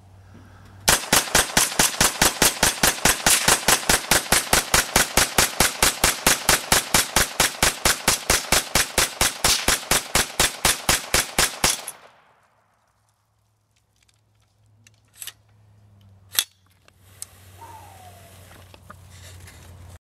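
AR-57 rifle, a blowback-operated 5.7×28 mm upper on an AR-15 lower, firing a long, rapid, evenly spaced string of shots at about four to five a second for some eleven seconds before stopping abruptly. Two sharp clicks follow near the end.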